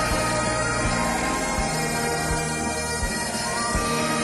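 Large crowd singing a hymn together over steady, sustained instrumental accompaniment with long held notes.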